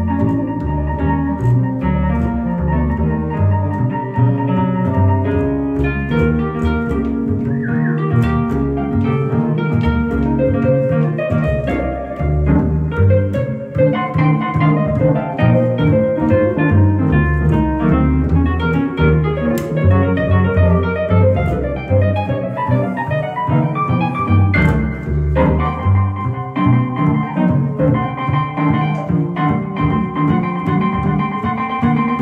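Instrumental duo of plucked upright double bass and electric keyboard playing together, the keyboard holding long sustained notes over the bass line.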